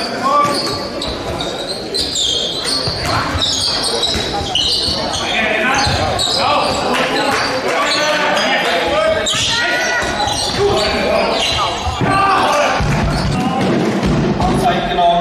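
Indoor handball play in an echoing sports hall: the ball bouncing on the court floor and short knocks of play, mixed with players calling out to each other.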